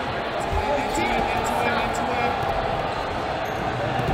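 Hall ambience of a busy wrestling gym: voices of spectators and coaches, with low thuds of bodies and knees hitting the foam mat as the wrestlers scramble.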